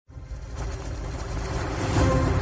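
Opening intro sound effect: a low, noisy rumble that swells steadily louder, building into the intro music.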